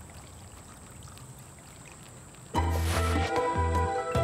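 Boiling water poured in a thin stream from a stainless steel kettle onto mulch, a faint, even trickle. About two and a half seconds in, music with a repeated bass note comes in much louder.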